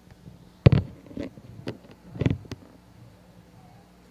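Handling noise from a handheld wireless microphone being picked up and passed over: a handful of knocks and bumps, the two loudest a little under a second in and just after two seconds in, with lighter taps between.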